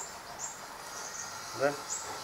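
Garden ambience with a few faint, short, high bird chirps over a steady background hiss; a single short spoken word comes near the end.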